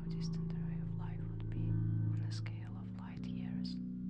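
Whispered voice-over above a low ambient music drone of held notes. The low notes shift about one and a half seconds in and again shortly before three seconds.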